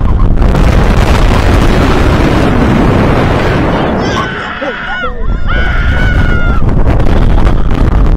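Wind buffeting the microphone as a swinging giant pendulum ride rushes through the air, with riders screaming; one long held scream starts about four seconds in and stops shortly before the end.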